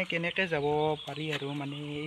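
A man's voice talking, with a few long, nearly level-pitched drawn-out syllables.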